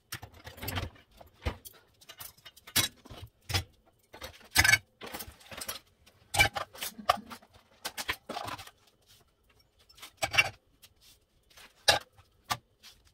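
Crockery and glasses being loaded into a dishwasher's wire racks: irregular clinks, knocks and rattles of ceramic and glass set down against the rack.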